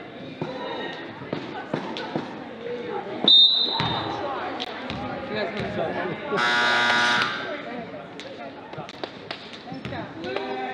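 Gym sounds during a basketball game: a referee's whistle blows once, short and sharp, about three seconds in, and about three seconds later the scoreboard horn sounds steadily for about a second. Crowd chatter and a few ball bounces run underneath.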